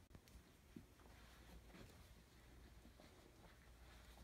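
Near silence: faint, scattered soft rustles and ticks of a cat and a kitten scuffling on a bath mat over a low room hum.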